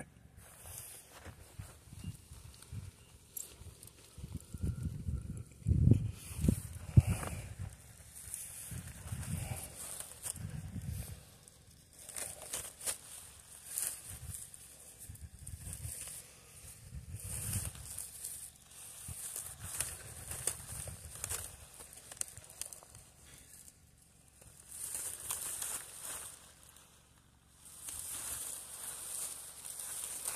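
Clear plastic wrapping rustling and crinkling in irregular spells as it is handled and pulled off an evergreen grave blanket, with a few low rumbles, loudest about six seconds in.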